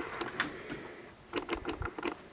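A few light clicks and taps in a small room: a couple near the start, then a quick run of four or five about a second and a half in.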